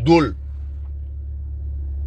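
Steady low rumble inside a car's cabin, of the kind an idling engine or running climate fan makes, with no other event over it.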